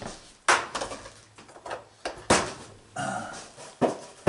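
Dishes and a utensil knocking and clinking on a kitchen counter: three sharp knocks, at about half a second in, a little past two seconds and near the end, with quieter clatter between them.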